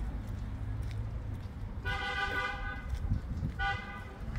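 A car horn honks twice: a held honk of about a second starting about two seconds in, then a short honk near the end, over a low steady rumble of street traffic.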